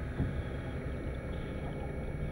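A steady low rumble with faint hiss above it, the muffled underwater ambience laid under the documentary's pictures.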